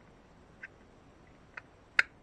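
Small clicks of an Abu Garcia Cardinal C33 spinning reel's housing and parts being pressed back together during reassembly: two faint clicks, then a sharp, louder click at the very end as the parts start to snap into place.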